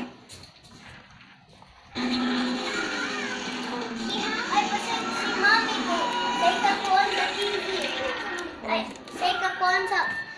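Overlapping children's voices mixed with music. It starts abruptly about two seconds in after a quiet moment and breaks up near the end.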